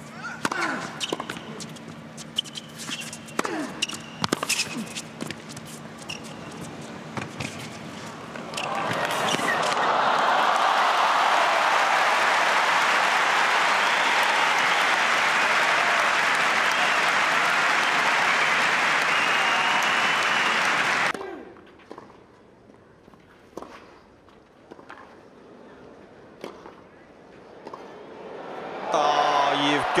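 Tennis ball struck back and forth with rackets during a rally on an indoor hard court, sharp pops about a second apart. About nine seconds in, a loud crowd applauds and cheers for about twelve seconds; it cuts off suddenly, and crowd noise rises again near the end.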